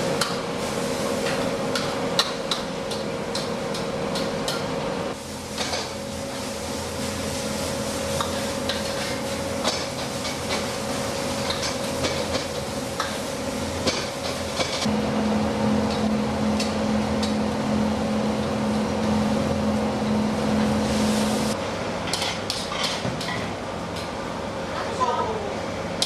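Wok cooking in a busy kitchen: metal ladles and spatulas clanking and scraping against woks over a steady rush of high-flame gas burners and sizzling food, with a steady hum behind.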